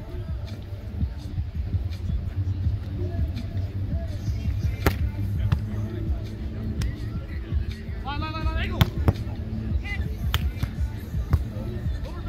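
Beach volleyball rally: several sharp slaps of hands and forearms on the ball, the clearest about five and nine seconds in, and a player's shout just before the nine-second hit. Under it run a steady low rumble and music in the background.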